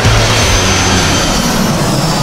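Loud rushing roar of a jet aircraft passing, with low notes of music underneath.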